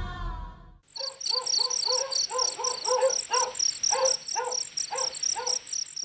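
Background music fades out in the first second, giving way to night ambience: crickets chirping in a fast, even pulse, with a lower call repeated about three times a second.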